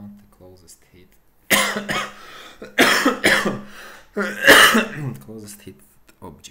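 A man coughing: a fit of about four loud, harsh coughs, starting about a second and a half in.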